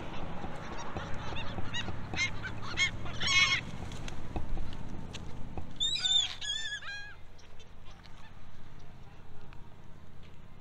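Gulls calling: a run of short calls about two seconds in, then a louder group of calls around six seconds.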